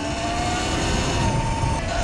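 Sur Ron electric dirt bike's motor whining, the whine rising slowly in pitch as the bike gains speed, over steady wind and tyre noise; the whine stops just before the end.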